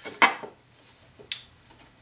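A sharp wooden knock as a hardwood stretcher is pressed into place against the dry-fitted drawer assembly, followed about a second later by a lighter, thinner click of wood on wood.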